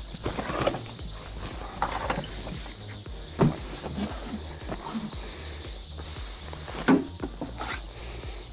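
Fishing gear being handled: scattered knocks and rustles as padded bags and a rod case are moved and set down on a fishing platform, the loudest knocks about three and a half and seven seconds in, over quiet background music.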